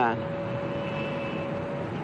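Steady traffic noise from a jam of cars, trucks and buses, with a constant hum running through it.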